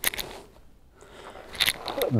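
A person breathing out and shifting on a yoga mat: a short rustling exhale, a brief lull, then faint rustling with a few small clicks near the end.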